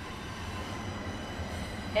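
A long train passing, heard as a steady low rumble with faint thin high tones over it.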